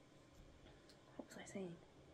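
Near silence, room tone, broken a little over a second in by a woman's voice murmuring very softly for about half a second.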